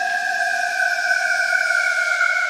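Electronic music: a sustained synthesizer tone, sliding slowly downward in pitch over a hissing noise wash, with no beat.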